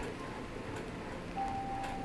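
A pause in speech: quiet room noise, with a faint steady high tone coming in about two-thirds of the way through.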